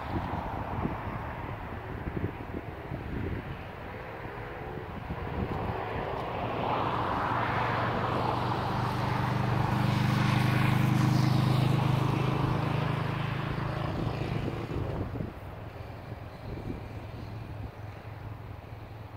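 An engine drone passing by: a low steady hum that swells to its loudest midway, then fades away near the end.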